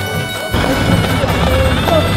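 Loud procession music: a held, wavering wind-instrument melody over dense drumming that comes in harder about half a second in.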